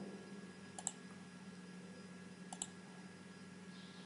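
Two faint computer mouse clicks about a second and a half apart, over a faint steady electrical hum.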